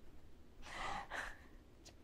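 A person breathing audibly: a long breath about half a second in, then a shorter one just after.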